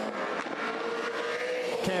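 Ford Falcon V8 Supercar engine at high revs, pulling through a corner on a hot lap. Its note rises slightly and then holds steady.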